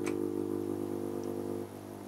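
Steady low electrical hum from an APC SMT2200I UPS that has just been switched on, with a light click right at the start; the hum drops away near the end.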